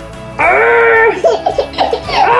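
A baby laughing over background music: a held squeal starting about half a second in, then a run of short laughs.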